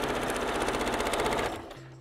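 Elna sewing machine stitching a straight quilting line through patchwork at a rapid, even rate, stopping about one and a half seconds in.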